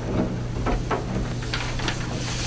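Large paper maps being handled on a table: a series of short rustles and crinkles of paper, over a steady low hum.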